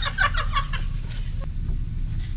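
A person laughing in quick, repeated bursts that die away about a second in, leaving a steady low hum.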